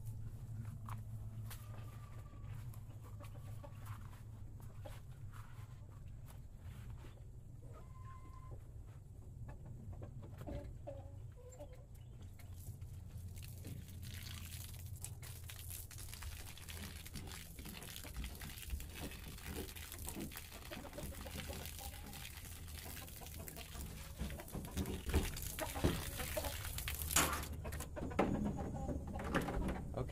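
Chickens clucking in a coop. From about halfway, a steady hiss of water from a garden hose running into a plastic IBC tote as it starts to fill. There are a few sharp knocks near the end.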